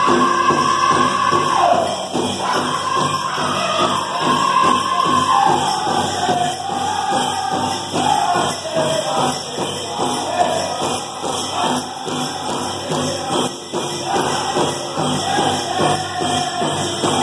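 Powwow drum group singing around a big drum: high, held men's voices that step down in pitch through the song over a steady, even drumbeat.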